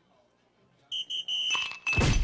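Electronic dartboard's scoring sound effect: about a second in, three quick high electronic beeps, then louder crashing strokes as it marks a triple 20.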